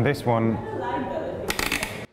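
A man's voice speaking, then about half a second of rattling clatter near the end as the frame of a manual wheelchair is handled.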